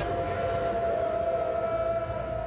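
A single steady, siren-like held tone with a slight waver about a second in.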